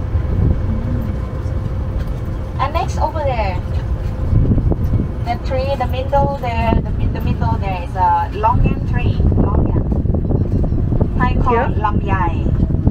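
Low, steady rumble of an open-sided tour tram riding along a farm road, with voices talking now and then over it.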